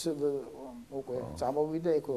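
A man talking in a low voice without a break. This is ordinary speech only.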